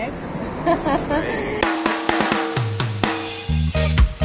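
Laughter, then background music cuts in suddenly about one and a half seconds in: a drum kit with sharp snare hits, joined by a bass line near the end.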